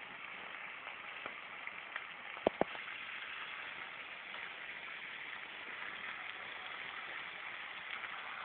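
Beef sizzling as it fries in its juices in a pan, a steady crackling sizzle, with two sharp clicks close together about two and a half seconds in.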